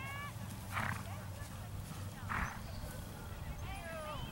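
Horses at a distance: a pitched whinny with bending pitch and three short, breathy snorts about a second and a half apart, over a low rumble of wind.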